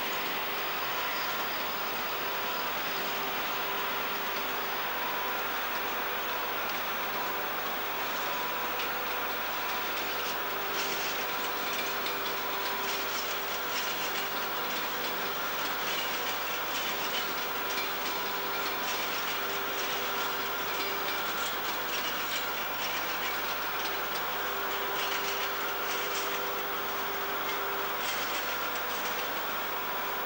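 Talgo train rolling across pointwork, its wheels clicking over the rail joints and crossings in a steady clickety-clack, under a constant hiss.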